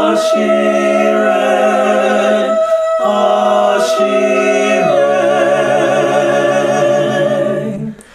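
Small mixed a cappella vocal group of women and men singing held chords in close harmony, with no instruments. The chords change about every two to three seconds, and the singing breaks off briefly near the end. It is heard through a Zoom call's audio.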